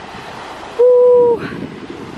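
Small waves washing onto a pebble beach with wind on the microphone, cut across about a second in by a short, steady hooting tone lasting about half a second.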